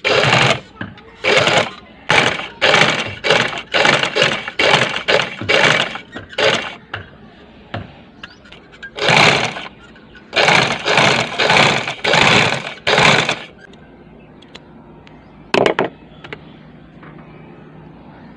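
Firdaus sewing machine stitching a round seam that sets a sleeve into a kameez armhole. It runs for about seven seconds, stops, runs again for about four, then gives one short burst near the end.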